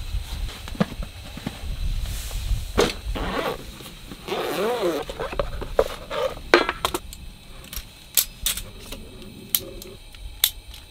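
Rustling of bedding and fabric as a person moves off a camp cot, with a squeaky creak about halfway through, then a run of sharp metallic clicks and rattles as a folding metal stand is opened out.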